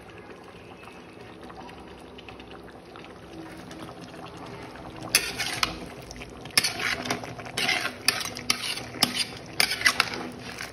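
Mutton gravy boiling in a large metal pot, a steady low bubbling. About halfway through, a metal ladle starts stirring it, scraping and knocking against the pot's sides in a quick irregular series of clatters.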